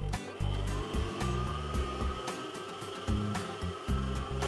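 Background music with shifting low notes, over a faint steady whine from a stand mixer's motor kneading dough at speed 2; the whine rises a little in pitch in the first second.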